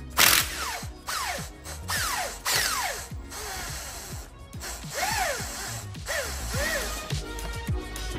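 Cordless power tool on a long extension run in a string of short trigger pulls, its motor whining up and falling away with each one, unscrewing a motor-mount bolt. Background music plays under it.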